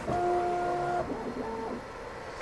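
A Bambu Lab 3D printer's stepper motors whining as the print head moves during auto-calibration. A steady tone runs for about a second, then a shorter move rises in pitch, holds and falls away.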